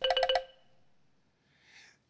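A short chime sound effect: one bell-like note struck about six times in quick succession over half a second, ringing out briefly before it fades.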